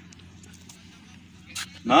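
A single sharp knock about one and a half seconds in, from a cricket bat being brought down on a wooden stump to drive it into the ground, over faint outdoor background noise. A man's voice starts just after.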